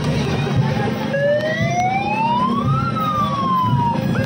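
A siren wailing: one tone that starts about a second in, rises in pitch for nearly two seconds, then falls again, over a steady background din.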